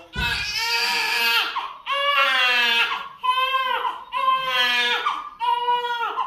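Newborn baby crying hard while being handled on an examination table: five long, high wails of about a second each, with short breaks between them.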